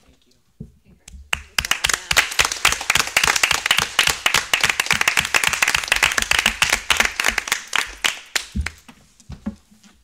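A small group of people applauding. The clapping starts about a second and a half in, holds for several seconds and thins out near the end.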